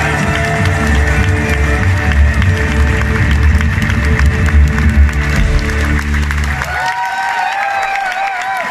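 Live rock band with electric guitars, keyboards and drums playing loudly over heavy bass, the audience clapping along. The band cuts off about seven seconds in, leaving crowd cheering and whoops.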